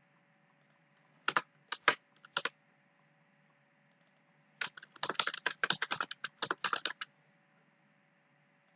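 Computer keyboard typing: a few separate keystrokes, then a quick run of keystrokes lasting about two seconds in the second half.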